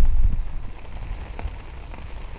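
Rain falling outdoors, with a low rumble underneath that fades gradually across the two seconds.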